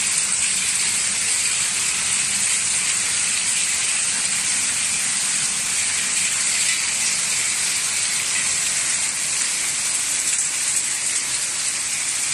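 Hail and rain falling on gravel and grass: a dense, steady hiss.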